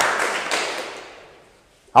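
Audience applause dying away, fading steadily until it stops near the end.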